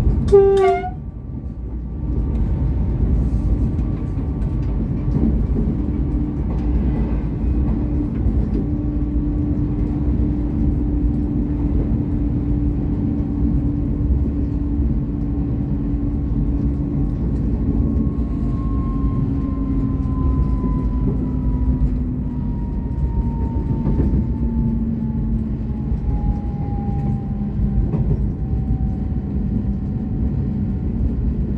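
VLocity diesel railcar under way, heard from the driver's cab: a short horn blast just after the start, then the steady rumble of the running gear and diesel engine, with a drone that slowly falls in pitch through the second half.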